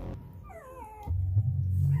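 Young puppy crying with a feeding tube in its throat: one short whine falling in pitch about half a second in. That it can still cry with the tube in is the sign that the tube has not gone into its airway. Background music with a deep bass comes in about a second in.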